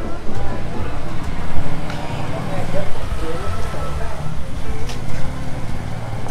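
Busy street ambience: a motor vehicle running close by, with people's voices and some music in the background.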